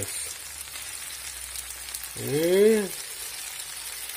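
Chopped vegetables sizzling steadily as they fry in an oiled pan and are stirred about. About two seconds in, a man's voice gives one drawn-out "ehh" that rises and then falls in pitch.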